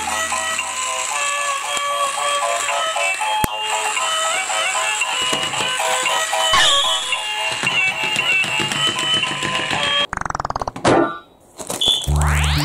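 Battery-operated light-up walking pig toy playing its built-in electronic tune, a repeating melody of short notes. The tune breaks off about ten seconds in.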